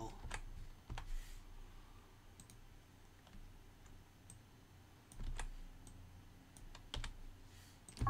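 A computer keyboard being pressed: faint, scattered single key clicks, about a dozen over several seconds.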